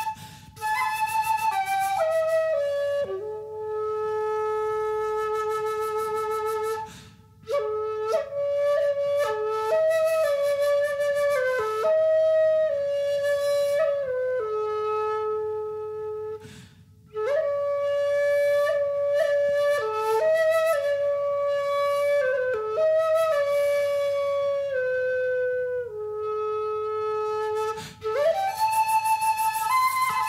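Solo flute playing a slow folk melody in long held notes, with short breaks for breath about seven, seventeen and twenty-eight seconds in.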